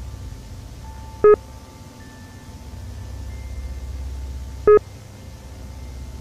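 Two short, loud electronic beeps about three and a half seconds apart, over a low steady drone with faint steady tones.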